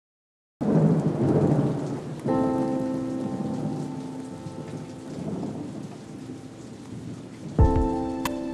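Heavy rain falling, opening on a loud crash of thunder after a moment of silence. From about two seconds in, a held musical chord sounds over the rain and slowly fades, and near the end a low thump arrives with a new chord.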